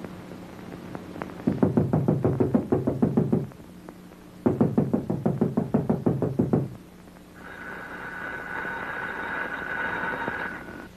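Two bouts of rapid knocking on a door, each about two seconds of fast, evenly spaced raps. A fainter steady whine follows near the end.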